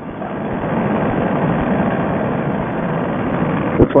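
Fresh Breeze Monster paramotor engine and propeller running steadily in flight, mixed with wind noise and muffled through a headset microphone that cuts off the high end. The sound grows over about the first second, then holds steady.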